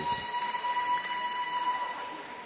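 End-of-round signal in a boxing ring: one steady, high ringing tone, fading out near the end, over crowd noise.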